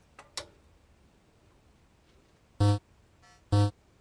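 Electronic countdown beeps, one a second, from a race start timer: two identical short, buzzy tones about two and a half and three and a half seconds in. A faint click comes just after the start.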